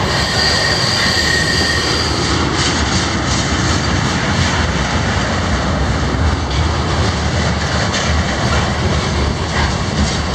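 Freight cars rolling past close by, steel wheels on rail in a steady loud rumble and rattle. A high, steady wheel squeal rings through the first couple of seconds.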